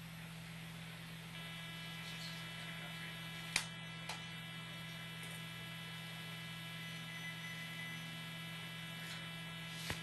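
Steady electrical hum on the audio line, joined about a second and a half in by a thin buzz, with a single sharp click a few seconds in.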